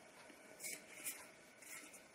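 Faint scuffs and rubs as an aluminium beer can is picked up off the bar counter and handled, three soft brushes about half a second apart.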